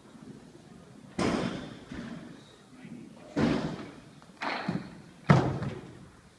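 Clean and jerk on a wooden lifting platform: four sudden thuds of the lifter's feet and the loaded barbell as he catches the clean and then drives and catches the jerk overhead, the sharpest just over five seconds in.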